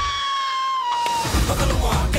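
Cartoon rooster screaming: one long, high screech that sags slightly in pitch and breaks off after about a second and a quarter. Trailer music with drum hits comes back in after it.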